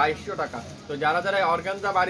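A man speaking in Bengali, quoting a price in taka.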